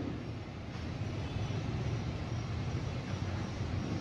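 Steady low rumble of background noise with a faint hiss, in a pause between speech.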